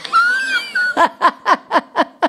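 A woman laughing: a high, drawn-out squeal in the first second, then a run of short 'ha' pulses, about four a second.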